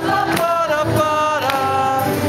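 Live acoustic band: a man singing long held notes with vibrato over acoustic guitar and keyboard piano, changing note about halfway through, heard from the audience.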